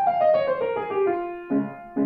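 Grand piano played at a quick tempo: a rapid descending run of notes, then low chords struck twice in the second half.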